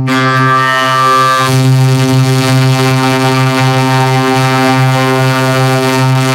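A loud, effects-distorted electronic drone held steady on one low pitch, with a brighter overtone ringing over it for about the first second and a half.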